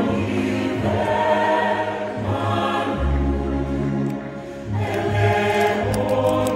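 Large mixed choir singing in harmony with an orchestra, in long held phrases. A deep low note sounds through the middle, and the voices dip briefly before a new phrase swells in near the end.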